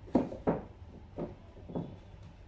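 Books being set down and pushed into place on a bookshelf: four short, dull knocks, the first two close together.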